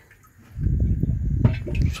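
Water starting to gush into a rooftop storage tank as a float switch tipped down opens the solenoid valve on the inlet; a rough, low rushing sound that starts suddenly about half a second in and keeps running.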